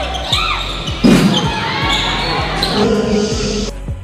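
Live basketball game sound: the ball bouncing on the court and sneakers squeaking, with a loud thud about a second in. Background music with a steady beat plays under it.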